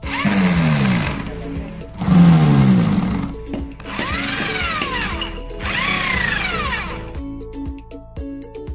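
Corded electric drill boring into the frame of a water dispenser, running in four bursts of a second or so, its motor pitch rising and falling with each burst.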